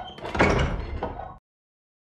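A wooden door opening, a sound effect lasting about a second and a half that cuts off suddenly.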